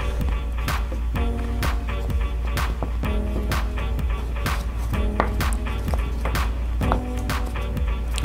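Background music with a steady beat of about two strokes a second under held notes.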